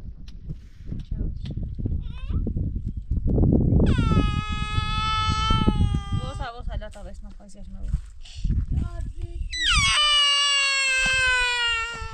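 A small child crying: two long wailing cries that start high and fall in pitch, about four and ten seconds in. Between and under them, dull thuds and rustling of dough being kneaded in a metal basin.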